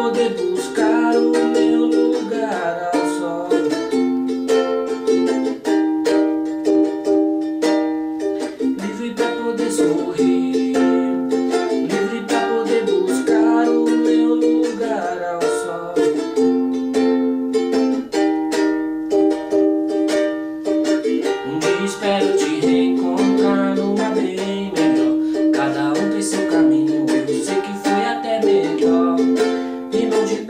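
Ukulele strummed in a steady rhythm through a chord progression of Gm, Eb, Bbmaj7 and F, with a man singing along in Portuguese.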